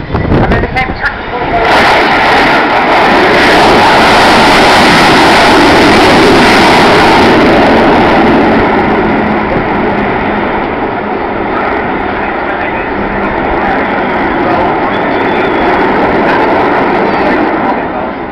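Jet roar from the four Rolls-Royce Olympus turbojets of an Avro Vulcan B2 bomber in a display pass. The roar comes in sharply about two seconds in and is at its loudest for several seconds. It then eases a little as the aircraft climbs away.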